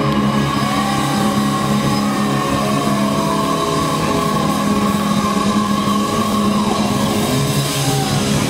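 Live heavy metal band playing loud and without a break: distorted electric guitars holding sustained chords over bass and a drum kit.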